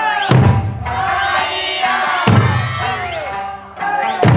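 Eisa drum dance: the large barrel drums (ōdaiko) and small hand drums (paranku) are struck together twice, about two seconds apart, over an Okinawan folk song with singing and the dancers' shouted calls.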